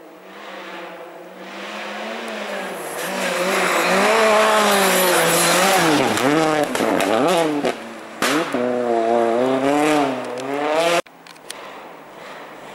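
Citroën DS3 rally car passing at speed: the engine note climbs as it approaches and is loud from about four seconds in, dipping in pitch several times as it shifts. A sharp crack comes about eight seconds in, then the engine climbs again as it pulls away and cuts off abruptly near the end.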